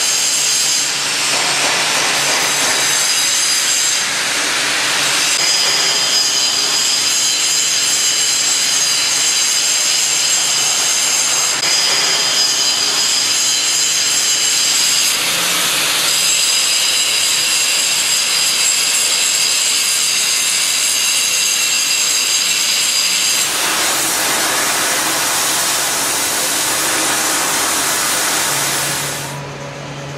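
Power grinding and cutting on the steel plates of a steam locomotive's inner firebox: a loud, steady noise with a high ringing whine, as the corroded plates are cut out for replacement. About two-thirds of the way in the sound turns rougher and more hissing, and it drops away just before the end.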